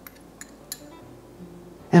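Three light clinks of a small glass prep bowl and its utensil as chopped parsley is tipped into a ceramic mortar, within the first second, over soft background music.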